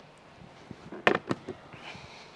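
A few quick clicks and clunks from a 2022 Hyundai Tucson's body about a second in: the fuel filler flap being pushed shut and the central door locks engaging.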